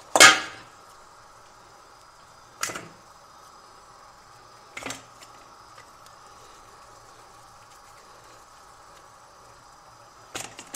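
Chapati dough being kneaded and pressed in a stainless steel bowl: three short knocks, the loudest right at the start, then about two and a half and five seconds in.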